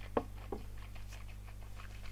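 A tulip-shaped whisky tasting glass set down on a table: a sharp knock and a lighter second knock about a third of a second later, then a few faint ticks, over a low steady hum.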